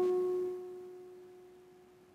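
Classical guitar with nylon strings, its last plucked note ringing out as one clear, pure-sounding pitch that fades away smoothly over about two seconds.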